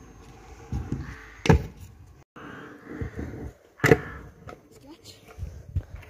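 Stunt scooter rolling on asphalt, with two sharp clacks of the scooter striking the ground, about one and a half seconds and four seconds in, during a no-foot fly-out trick.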